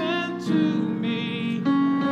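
A man singing a slow gospel song with vibrato over sustained chords played on a digital keyboard. The voice stops about one and a half seconds in, and the keyboard chords carry on.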